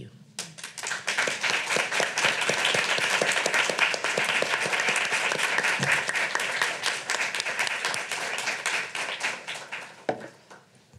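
Audience applauding, building up within the first second, holding, then thinning out near the end.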